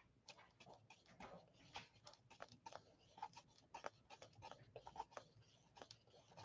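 Faint, irregular little scrapes and dabs of a flat paintbrush working red acrylic paint on a paper-plate palette, in near silence.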